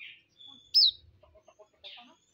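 Hume's white-eye (Zosterops auriventer) calling: a thin held whistle, then about three quarters of a second in a loud sharp chirp that falls in pitch, and a softer hoarse note near the end.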